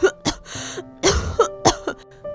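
A sick woman's coughing fit: a run of short, harsh coughs in quick succession, over soft background music.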